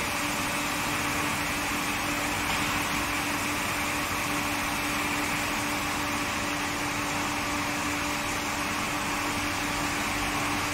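Induction heat-treatment line for oil casing pipe running steadily: a constant machine hum with a steady low tone over an even hiss.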